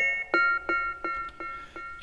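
A lead melody made from a sampled metal lamp hit, pitched into notes and processed with delay. It plays a run of ringing, plucked-sounding notes, about three a second.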